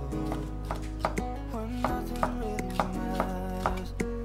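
Kitchen knife slicing a yellow bell pepper into thin strips on a wooden cutting board: a string of crisp chops against the board, about two or three a second, over background music.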